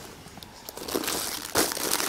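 Clear plastic wrapping on packaged ladies' suit pieces crinkling as the packets are handled, quiet at first, then rustling from about a second in.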